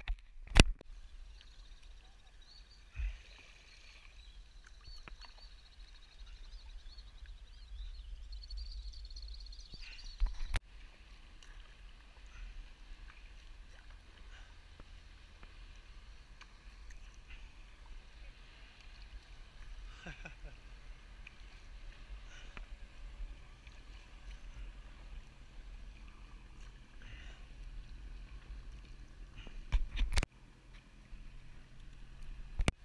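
Sea kayak being paddled on calm water: quiet paddle strokes and water lapping at the hull over a steady low wind rumble on the camera mic. Two sharp clicks, about half a second and ten seconds in.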